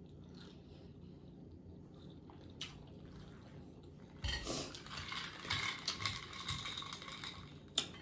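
Sucking an iced drink up through a drinking straw: a slurping hiss that starts about four seconds in and lasts about three and a half seconds, with small clicks through it.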